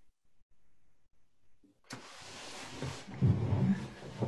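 Rustling, rumbling noise on a video-call participant's open microphone. It starts suddenly about two seconds in and is loudest near the end.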